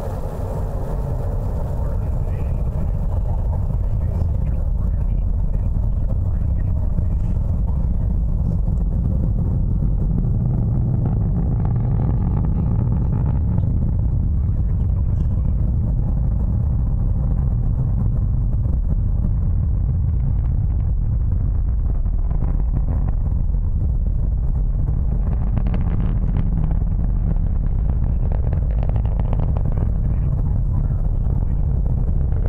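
Distant Atlas V rocket climbing on its RD-180 first-stage engine: a steady deep rumble that swells over the first couple of seconds and then holds.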